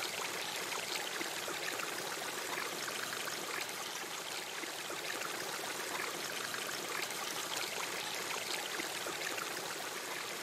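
Water running and trickling steadily over rock, an even rushing hiss.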